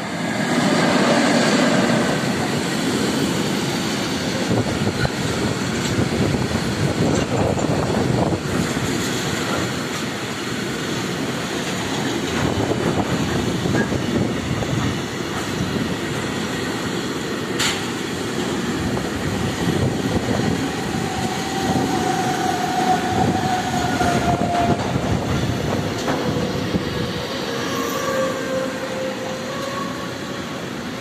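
Freight train passing close by: the electric locomotive goes by loudly in the first couple of seconds, then a long line of tank wagons rolls past with a steady rumble. Thin wheel squeals come and go in the second half.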